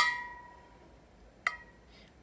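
A metal spoon clinking against a glass jar twice: a sharp clink at the start that rings and fades over about a second, then a lighter clink about a second and a half later.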